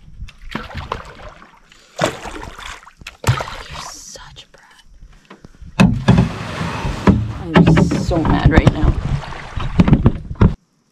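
Canoe paddle strokes pulling through the water, a few separate strokes over the first half, then a louder stretch with low rumbling over the last few seconds.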